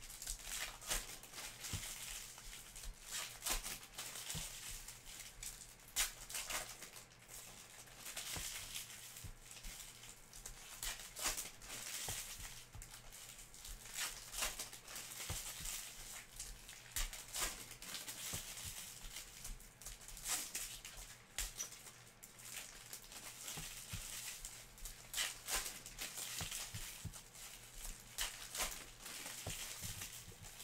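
Foil trading-card pack wrappers being torn open and crinkled by hand: a continuous run of sharp crackles and rustles.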